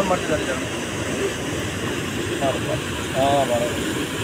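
Steady rush of water pouring over a masonry dam's spillway from a full reservoir, with short snatches of people's voices about two and a half and three seconds in.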